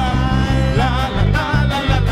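Live worship band playing an upbeat praise song: drum kit and bass keeping a steady, pulsing beat under a singer's voice, which holds and bends long notes.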